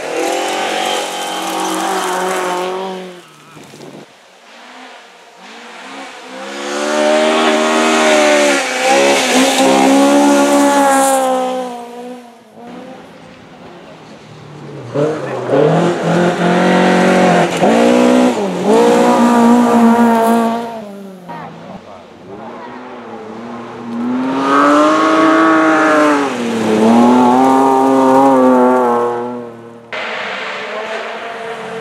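Rally cars on a gravel stage passing one after another, four loud passes in all. Each engine is revved hard, its note dipping at each lift or gear change and climbing again.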